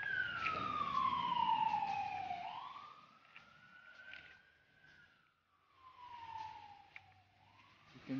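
A siren wailing, its pitch gliding slowly down and back up twice, about five seconds per cycle. It grows much fainter after the first fall.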